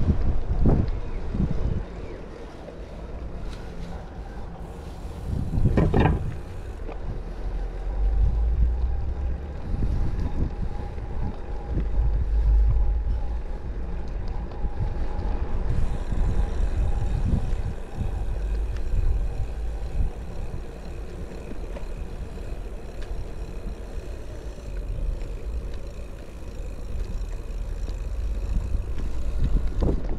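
Wind buffeting the microphone of a camera on a moving bicycle, a steady low rumble, with a sharp knock just under a second in and another about six seconds in.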